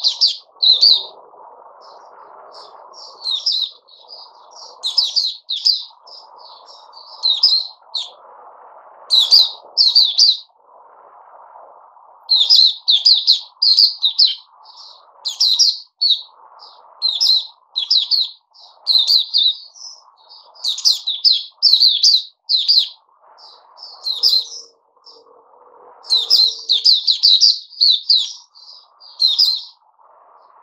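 Caged white-eye chirping: short bursts of quick, high-pitched twittering notes, repeated every second or two throughout.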